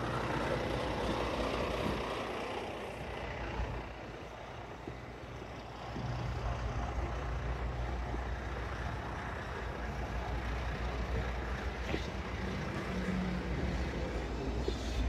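A bus's diesel engine running, heard from the driver's seat, with the low rumble growing louder about six seconds in.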